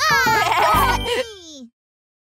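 Cartoon character's drawn-out whining cry of "Não!" over children's music, its pitch sliding down and trailing off, then cutting to silence just before the end.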